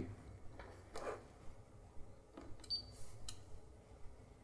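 Faint, scattered clicks of front-panel buttons being pressed on a Siglent SDS1202X-E digital oscilloscope, several close together in the second half.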